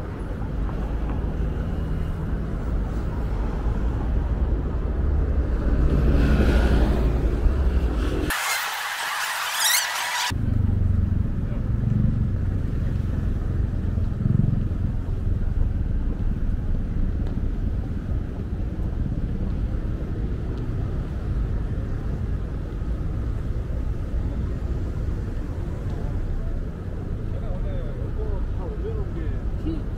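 Busy pedestrian street ambience: indistinct voices of passers-by over a steady low rumble. About eight seconds in, two seconds of harsh hiss replace the rumble.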